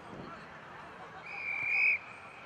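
A referee's whistle blown once near the end, a single steady high note lasting just under a second that swells and then cuts off sharply.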